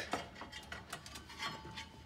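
Faint, scattered light clicks and ticks from a steel tape measure being handled and worked around the engine's belt pulleys.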